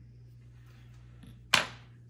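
A single sharp clack about one and a half seconds in: a thin metal pointer being put down on a hard tabletop. A faint steady low hum sits underneath.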